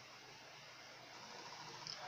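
Near silence: a faint, steady hiss of room tone that grows slightly louder toward the end.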